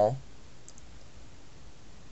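A couple of faint clicks from a deck of playing cards held in one hand, about two-thirds of a second in, as the thumb starts to take half the deck; otherwise low room hiss.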